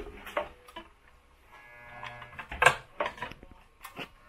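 A few light clicks and taps from hands handling monofilament fishing line and a spinning reel mounted on a line-spooling machine, the sharpest about two and a half seconds in.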